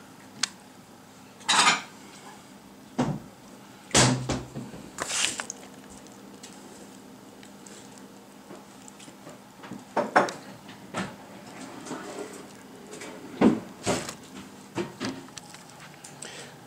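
Scattered clinks, knocks and rustles of metal mount hardware, a mounting plate and a paper drilling template being handled and set down, about a dozen short separate sounds with gaps between them.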